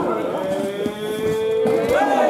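One long, loud drawn-out shout from a single voice, held on one note that rises slightly near the end.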